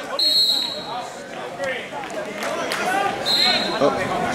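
Referee's whistle blown twice, two short, steady high blasts about three seconds apart, with spectators' voices between them.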